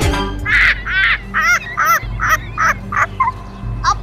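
A run of short, high-pitched voice-like calls, about two a second, each bending in pitch, over a steady low background music drone.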